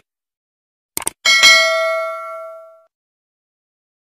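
Two quick clicks, then a bright bell ding that rings out and fades over about a second and a half: the stock sound effect of a subscribe-button animation, with the cursor click followed by the notification bell.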